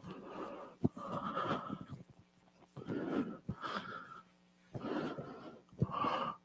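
Chalk scratching on a blackboard in three bursts of strokes, each about a second long, with sharp taps of the chalk against the board between and within them.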